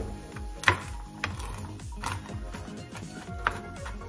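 Kitchen knife chopping walnuts on a plastic cutting board: a few sharp, irregular knocks of the blade against the board, over background music.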